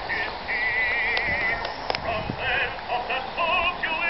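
Edison Diamond Disc phonograph L35 playing a male vocal record, heard from some distance in the open: the singer's held notes waver with vibrato, with a few short gaps between phrases. Two faint clicks sound near the middle.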